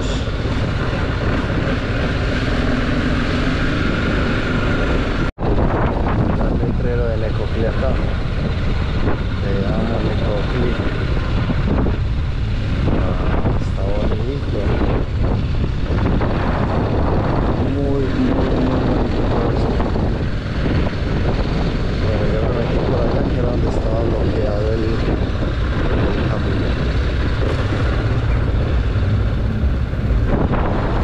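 Motorcycle engine running and wind rushing over the camera microphone while riding, a steady loud rumble. The sound cuts out for an instant about five seconds in.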